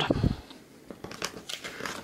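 A picture-book page being turned by hand: soft, crinkling paper rustles, starting about a second in.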